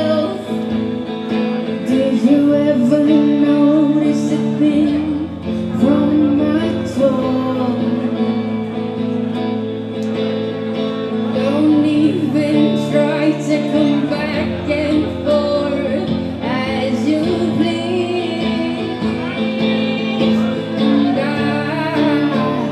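Live pop song: a woman singing into a microphone over electric guitar, with sustained low notes underneath.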